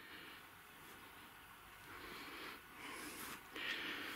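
Faint outdoor background noise: a low, even hiss with no distinct events, a little louder in the second half.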